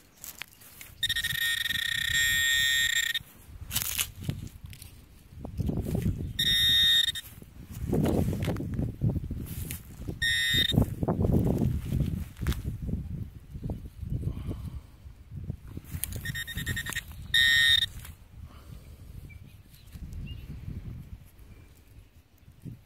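A metal detector giving a steady, high electronic tone in several separate bursts: the longest, about two seconds, comes near the start, and shorter ones follow, the sign of buried metal in the dug soil. Between the tones comes the rough scraping and rustling of soil and grass being dug and sifted by hand.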